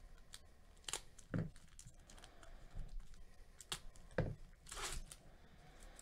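A trading-card pack's foil wrapper being handled and torn open, with crinkling and small clicks, a couple of dull thumps, and a short rip about five seconds in.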